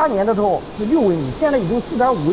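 Speech: a voice talking in quick phrases with pitch swinging strongly up and down.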